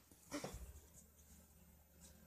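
A dog gives one short, soft whimper about a third of a second in; otherwise only faint room tone.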